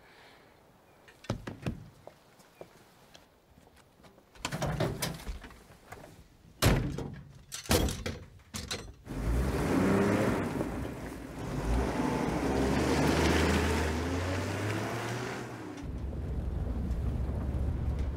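Near silence, then handling knocks and a van door slamming shut about six and a half seconds in. The van's engine then starts and it pulls away, and the sound settles into a steady low engine drone heard from inside the cabin.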